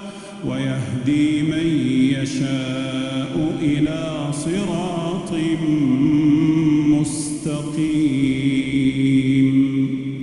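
A single male voice, the imam, chanting Quran recitation in slow, melodic phrases, with long held notes that bend up and down. The voice pauses briefly at the start, then goes on.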